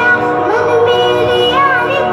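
A song playing: a high singing voice carries a melody with held, wavering notes over instrumental backing.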